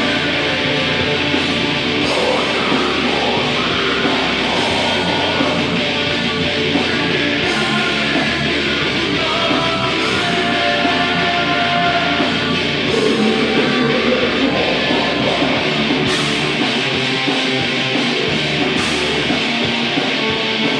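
Live heavy metal band playing: distorted electric guitars, bass and drums, with a vocalist singing into the microphone.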